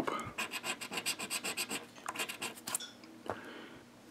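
Scratch-off coating being rubbed off a Loteria lottery scratcher ticket in quick, rapid strokes, about six scrapes a second, stopping about three seconds in.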